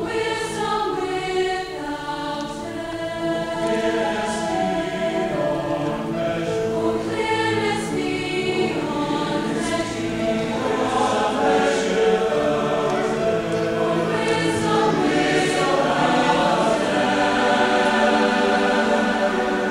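Large choir singing in full harmony, holding long chords, growing gradually louder toward the end.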